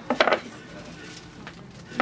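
Plastic golf discs being handled on a tabletop: a couple of sharp clicks near the start, then quieter handling as hands feel the discs.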